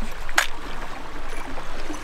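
Steady outdoor background noise with a low rumble, and one short sharp click about half a second in, while a metal spoon lure is being tied onto fishing line.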